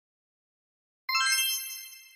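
Silence, then about a second in a single bright, bell-like chime that rings and fades away: a sound-effect cue for the answer reveal.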